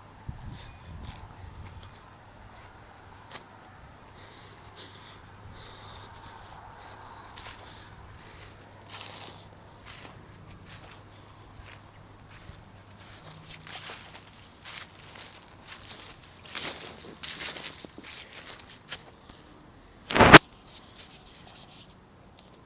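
Footsteps crunching and rustling through dry fallen leaves on grass, growing louder and more frequent in the second half. One sharp, loud knock near the end.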